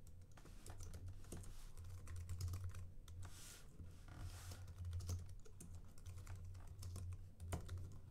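Typing on a computer keyboard: a run of irregular key clicks, with a low steady hum underneath.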